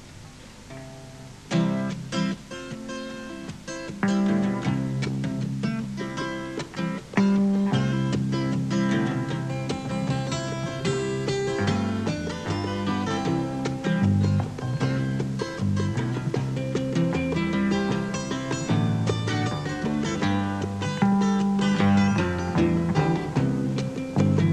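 Live acoustic folk band playing an instrumental introduction: picked acoustic guitars over a double bass line, with a hand drum. The playing comes in about a second and a half in and fills out, louder, around seven seconds in.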